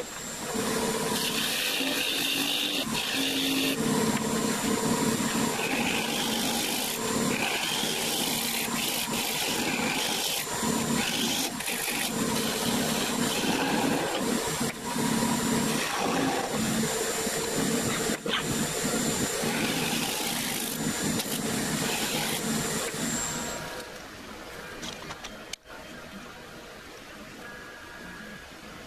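Turning tool cutting a spinning silver maple blank on a wood lathe: a steady, loud shearing noise over the lathe's steady whine. The cutting stops near the end and the sound drops to a quieter hum, with one sharp click.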